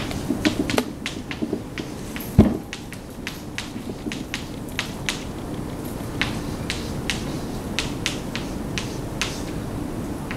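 Chalk clicking and tapping on a blackboard as an equation is written: irregular sharp taps, a few a second, with one louder knock about two and a half seconds in.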